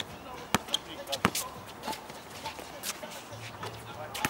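A basketball bounced on an outdoor hard court, several sharp, irregular bounces in the first couple of seconds, the loudest about a second and a quarter in.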